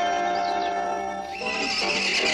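Orchestral film score with a held note, then a horse neighing loudly from about two-thirds of the way through.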